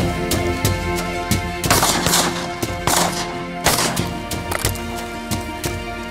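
Shotgun fired at ducks: three loud blasts in quick succession, about a second apart, between two and four seconds in, over background music.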